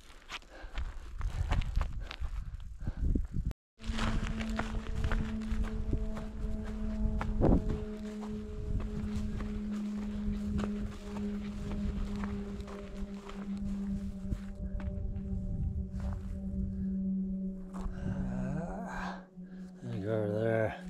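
A hiker's footsteps on a dry, grassy and rocky trail, with rustling and low thuds against the microphone. After a brief dropout about four seconds in, a steady low hum runs underneath.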